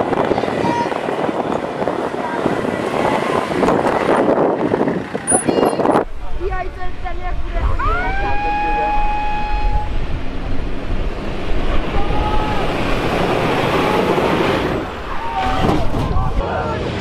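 Off-road 4x4 engines running hard on a dirt hill course, with spectators shouting and an abrupt break about six seconds in. About eight seconds in, a long high toot sounds for about two seconds, with a shorter one a few seconds later.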